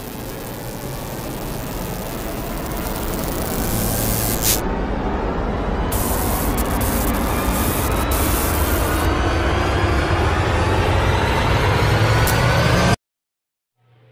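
Intro music built as a riser: a rushing noise with many tones climbing steadily in pitch, swelling in loudness, then cutting off suddenly near the end.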